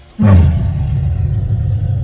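A sudden deep rumbling hit, typical of a documentary sound-design effect, starts about a quarter second in. It dips slightly in pitch, then holds as a steady low drone.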